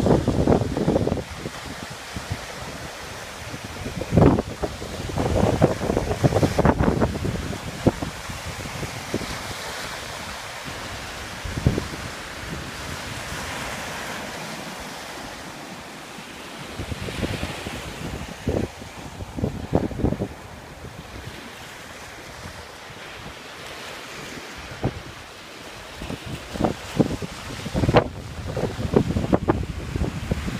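Wind buffeting the microphone in irregular gusts, loudest near the start, a few seconds in, and again near the end, over a steady rushing noise.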